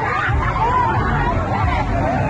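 Several people shouting and talking over one another at once, a loud jumble of voices recorded on a phone during a street brawl.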